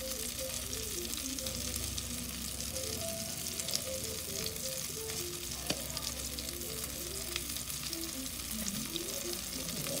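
Stuffed eggplant omelettes sizzling steadily as they shallow-fry in oil in a nonstick pan, with an occasional light click.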